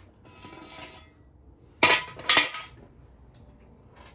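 A short scraping rattle of metal, then two sharp metal clanks about half a second apart, each ringing briefly: metal tools and parts being handled and set down while working on the engine.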